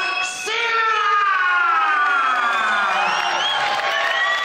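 Arena crowd cheering, with one long drawn-out yell that slowly falls in pitch over about three seconds.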